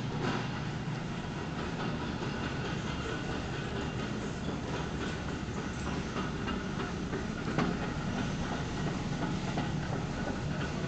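Shopping cart rolling over a hard store floor, a steady rumble and rattle from its wheels and frame, with a light knock about seven and a half seconds in.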